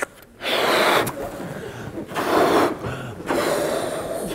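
A man blowing up a balloon by mouth: several long, forceful breaths rushing into it, with short pauses between them.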